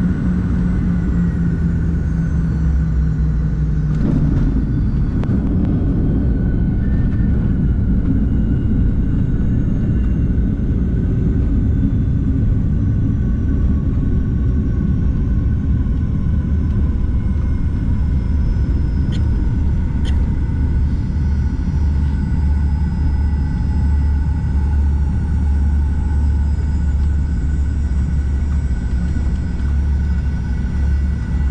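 Cabin sound of a Fokker 70 jet landing: a thump at touchdown about four seconds in, then the loud, steady rumble of the rollout on the runway. Over it, the whine of its Rolls-Royce Tay engines slowly falls in pitch as the aircraft slows. Two sharp clicks come about two-thirds of the way through.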